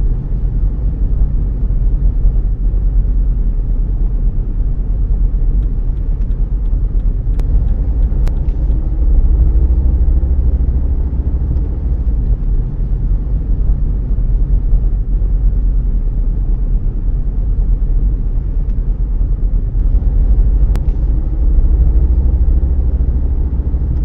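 Car cabin noise while driving: a steady low engine and road rumble, with the engine note rising a little as the car accelerates, about nine seconds in and again near the end.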